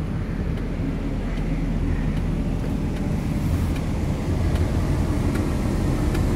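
A 1999 Ford Windstar's V6 engine idling, a steady low rumble heard from inside the van, with a few faint clicks over it.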